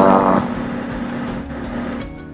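Background music with steady, sustained low tones, a brighter note sounding briefly at the start.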